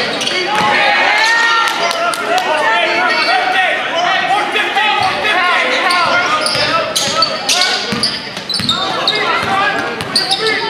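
Basketball being dribbled on a hardwood gym floor, bouncing repeatedly, under players' and spectators' shouting voices that echo in the large gym.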